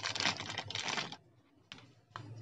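Clear plastic bag crinkling and crackling as a small hobby servo motor is handled and pulled out of it: a dense crackle for about a second, then quieter, with one light click near the end.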